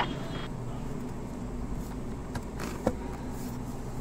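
Plastic roller shutter over a car's centre-console cupholders sliding shut, with a few light clicks, the clearest about three seconds in, over a steady low hum.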